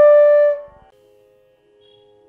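A long held flute note closing an intro jingle, ending about half a second in and fading out. It is followed by a faint, steady two-note drone.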